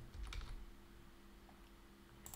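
A few faint computer keyboard keystrokes in the first half second and one more about a second and a half in, over a faint steady low hum.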